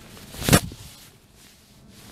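A single short whoosh about half a second in, from an Orange Whip swing trainer swung through the impact zone.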